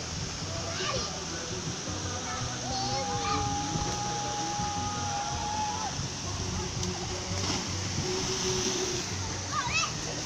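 Steady rush of a small waterfall pouring into a pool, with distant children's voices; one voice holds a single long call for about three seconds in the middle.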